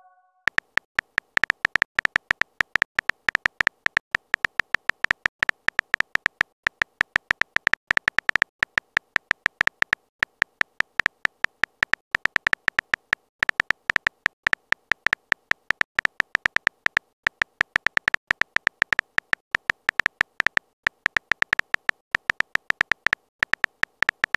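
Texting-app keyboard sound effect: a quick run of short, high electronic ticks, one for each letter as a message is typed out, several a second with brief pauses.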